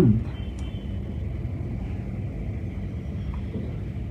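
Steady low rumble of background noise, with the tail of a man's voice falling away right at the start.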